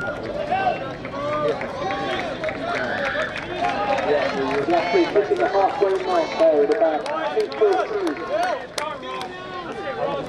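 Several spectators' voices talking over one another at the trackside, with a few sharp clicks in the second half.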